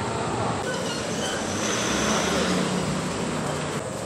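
Steady outdoor background noise, a continuous rumble and hiss with no clear single event.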